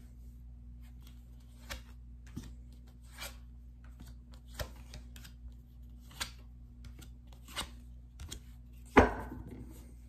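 A tarot deck being handled: crisp snaps of cards about every one and a half seconds, then a louder knock about nine seconds in.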